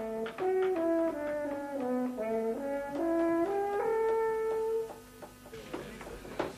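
Brass instruments, horn-like, playing a slow passage of sustained chords that moves in steps from chord to chord. The music stops about five seconds in, leaving only a few faint clicks.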